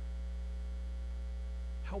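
Steady electrical mains hum, a low, unchanging drone with a few fixed higher tones over it. A man's voice starts right at the end.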